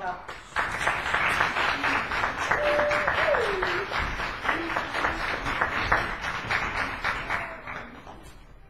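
Audience applauding for about seven seconds, starting about half a second in and tapering off near the end.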